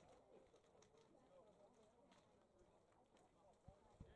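Near silence with faint, distant voices.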